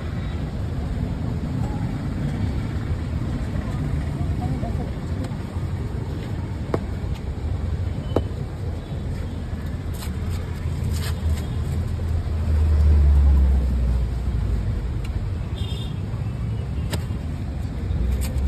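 Steady rumble of street traffic with voices in the background. A vehicle passes louder about two-thirds of the way through. There are two short, sharp clicks in the middle.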